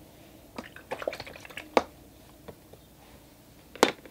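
Light taps and clicks of a paintbrush handled at a metal watercolour tin, scattered through the first two seconds, then a louder click near the end as the brush is set down beside the tin.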